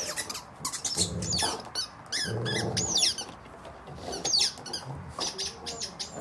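Squeaker in a rubber dental chew toy squeaking again and again as a Rottweiler bites down on it: clusters of short, high squeaks that bend in pitch.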